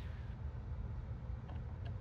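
Low steady background hum, with two faint ticks near the end.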